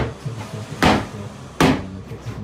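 Sharp wooden knocks, three in quick succession about three quarters of a second apart, as a plywood panel is banged into place against the timber wall studs.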